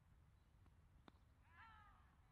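Near silence, broken about a second in by a faint sharp crack of the bat striking a cricket ball, then a brief high call that falls in pitch.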